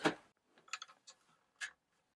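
A few faint, short clicks and rattles from a power cord's plug being pushed into the outlet of a plug-in watt meter and the cable being handled.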